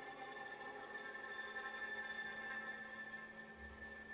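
Violin and viola bowing quiet, sustained high notes over a steady low tone, in the closing bars of a contemporary chamber piece.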